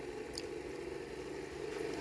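Homemade pulse motor with a clear resin rotor spinning steadily on its bearings, driven by hand-wound coils: a steady hum.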